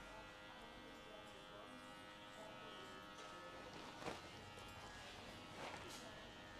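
Quiet barbershop room with a faint steady electric hum. A straight razor held nearly flat scrapes across the short hair of a fade twice, faintly, about four seconds in and again near the end.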